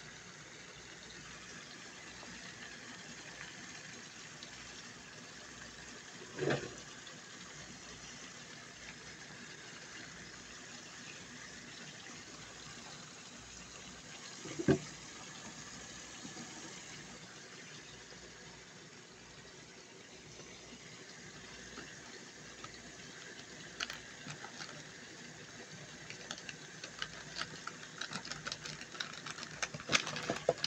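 Tomatoes and spices frying in bubbling oil in an aluminium karahi, a steady sizzle. Two sharp knocks, one a few seconds in and one about halfway, and toward the end the oil starts to spit and crackle in quick small pops.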